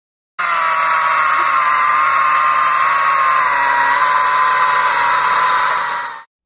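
Kress 60V cordless electric chainsaw cutting through a log: a steady, high motor-and-chain whine under load. It starts abruptly about half a second in, and its pitch sags slightly midway as the chain bites.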